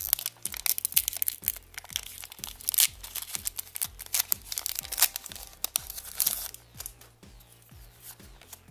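Foil wrapper of a Pokémon trading-card booster pack crinkling and tearing as it is worked open by hand, in a run of sharp crackles. It is loudest about three, five and six seconds in and dies down near the end as the cards come out.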